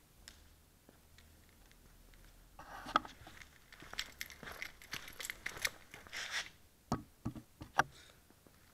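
Handling noise from a camera being picked up and carried: a stretch of rustling and scraping with small clicks, then a few sharp knocks near the end as it is set down.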